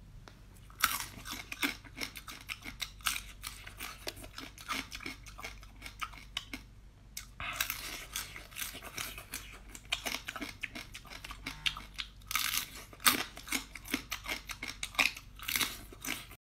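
Close-up chewing of small whole crabs, the shells cracking between the teeth in quick, crisp crunches, with a short pause about six and a half seconds in.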